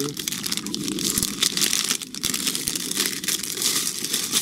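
Plastic bulb packaging crinkling and rustling as it is handled, in many quick crackles.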